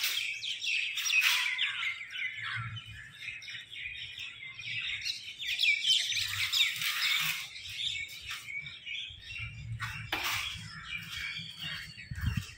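A busy chorus of birds chirping, many short tweets overlapping one another.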